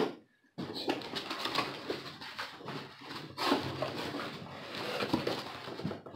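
Plastic packaging bag rustling and crinkling as it is handled and unwrapped, a continuous crackle of small clicks that starts after a brief silence about half a second in.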